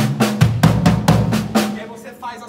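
Drum kit playing a fast gospel-chops lick: a quick, even run of strokes spread over snare, toms and bass drum, with ghost notes on the snare. The run stops near the end and rings out.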